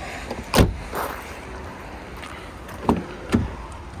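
A 2012 Vauxhall Astra hatchback's tailgate is pushed down and slams shut with a loud thud about half a second in. Near the end come two sharp clicks as a rear passenger door is unlatched and opened.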